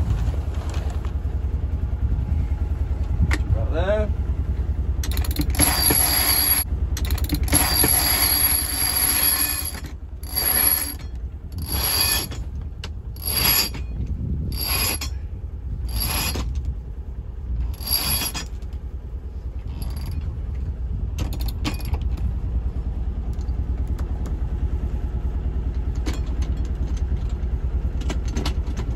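Reefing line being hauled in through the blocks and deck organiser of a sailboat's single-line reefing system, pulling the mainsail down to a reef. It comes in about eight pulls, each a second and a half or so apart, each a sharp zip of rope running through the blocks. A few lighter clicks follow.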